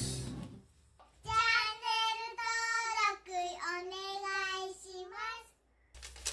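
A child's high singing voice: a short sung phrase of a few held and gliding notes, starting about a second in and stopping just before the end.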